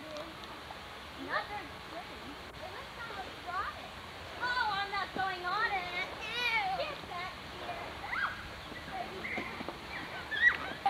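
High-pitched children's voices in short, bending calls and chatter, too indistinct to make out words, busiest in the middle of the stretch, over a faint steady outdoor hiss.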